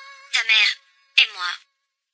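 A held background-music chord fades out, then a person's voice makes two short, high-pitched utterances, each about half a second long and falling in pitch, a little under a second apart.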